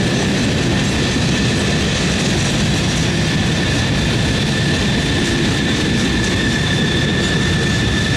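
Freight cars of a passing freight train rolling by at speed: a steady loud rumble and rattle of steel wheels on rail, with a steady high whine running over it.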